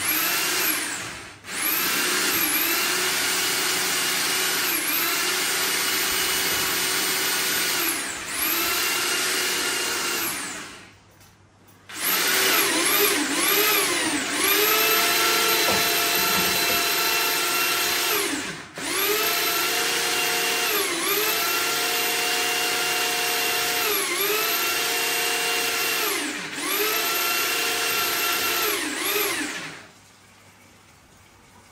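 Electric drill spinning a drum-type spring-cable drain cleaner that is feeding its cable into a blocked kitchen sink drain. The motor whines steadily and sags in pitch now and then. It stops and restarts several times, with the longest pause about eleven seconds in.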